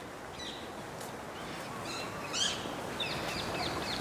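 Small birds chirping faintly over steady outdoor background noise, with a short call about two and a half seconds in and a run of quick chirps near the end.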